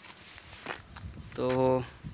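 A man's voice holding one drawn-out, level-pitched syllable ("to…") about a second and a half in, after a quiet stretch with a few faint clicks and rustles.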